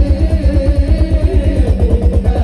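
Live sholawat band music: a fast, steady low drum beat, about five beats a second, under a melody line, with no singing.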